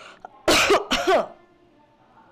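A woman coughing twice to clear her throat, the two short bursts about half a second apart.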